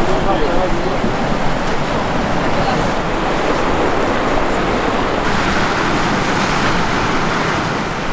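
Steady, loud rush of a fast mountain river running over rapids, an even noise with no engine in it.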